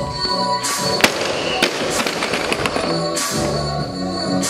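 Background electronic music with a beat, and about a second in a single loud bang as a loaded barbell with rubber bumper plates is dropped to the floor, followed by a second or two of smaller rattling knocks as it bounces and settles.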